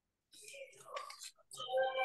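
Quiet, half-whispered speech over a video call, too faint for the words to be made out.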